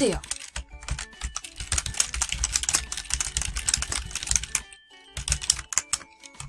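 Computer keyboard being typed on: a quick, continuous run of keystroke clicks lasting about five seconds as a title is typed in.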